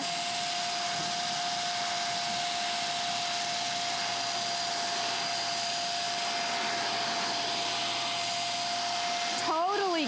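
Hoover Air Lift Lite bagless upright vacuum running, drawing air through its hose and pet hair brush tool as it sucks crumbs off a carpet. It makes a steady rush of air with a steady high whine over it.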